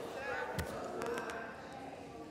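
Faint voices in a large hall, with one dull low thump a little over half a second in and a few light clicks soon after.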